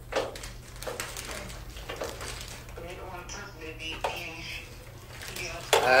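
Scattered light clicks and knocks of parts and wiring being handled inside an open vending machine, with faint voices in the background.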